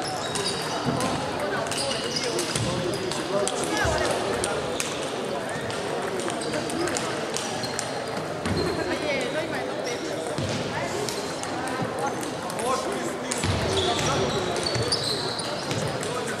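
Table tennis balls clicking off bats and tables in overlapping rallies at many tables at once in a large sports hall, with players' voices in the background.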